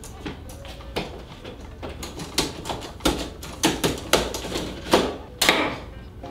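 A rolling suitcase knocking and thumping irregularly as it is dragged and wrestled along a narrow aisle between seats, about a dozen separate knocks.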